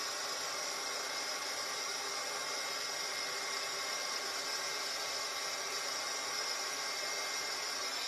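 Electric embossing heat tool running steadily, a constant rush of hot air with a faint whir, held on a stamped paper banner to heat-emboss it.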